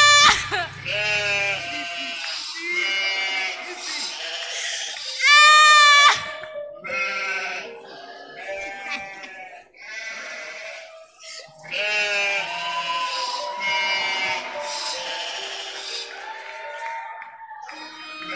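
A voice crying out in repeated high-pitched wails, with two long loud cries, one at the start and one about five seconds in, and shorter sobbing calls between them.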